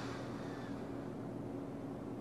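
Quiet room tone: a faint steady hum with light hiss.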